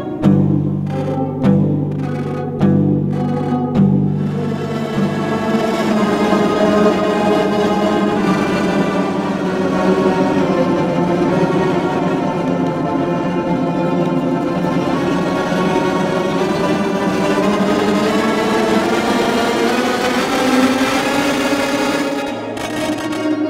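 Electric guitar played through a Max/MSP granulator whose sampling rate follows the player's head position. A few low notes are picked in the first seconds, then the sound becomes a dense, sustained granular drone.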